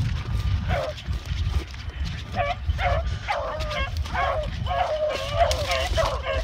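A pack of beagles giving tongue on a rabbit's trail: several hound voices in quick, overlapping yelps and bays starting about two seconds in, over a low rumble.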